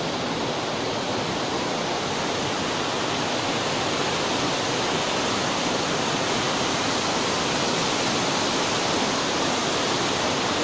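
Water rushing through the open gates of a river barrage: a steady, even rush with no breaks, growing slightly louder toward the end.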